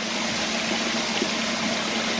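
Creek water running over rock and spilling into and around a micro-hydro intake box: a steady splashing rush, with a steady low hum beneath it.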